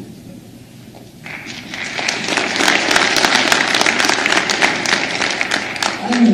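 Audience applauding. The clapping starts about a second in, swells within a second or so, and then carries on steadily.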